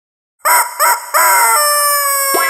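A rooster crowing cock-a-doodle-doo, starting about half a second in: two short notes and then a longer drawn-out one.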